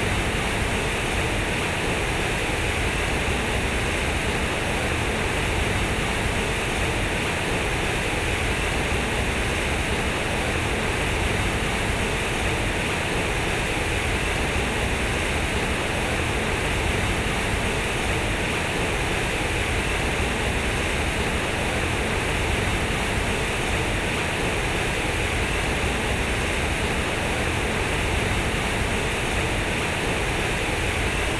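Water pouring from the square concrete spouts of a large fountain and splashing into its pool: a steady rush of falling water that holds the same level throughout.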